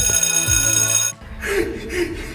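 A bright, steady electronic ringing tone that starts abruptly, lasts about a second and cuts off suddenly, like a bell or alarm sound effect. After it, a voice and a short laugh are heard.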